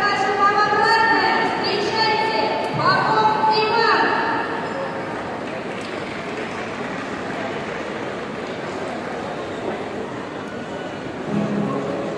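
Crowd hubbub echoing in a large indoor shopping mall atrium, with a high-pitched voice calling out over it for the first four seconds or so.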